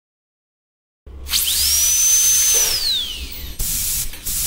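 High-speed dental drill whining up to a high, steady pitch, holding for about a second, then winding down, with air hiss throughout. Two short hissing bursts follow near the end.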